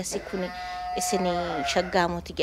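A person's voice drawing out one long, steady vowel for about a second, mid-speech, with other speech overlapping as it ends.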